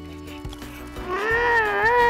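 Background music, then about a second in a long, drawn-out cry with a wavering pitch from an angler as a big grouper takes the bait and bends his rod.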